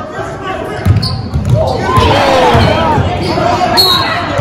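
A basketball bouncing on a hardwood gym floor during a game, a string of low thumps starting about a second in. Players' and spectators' voices echo around the large gym over it.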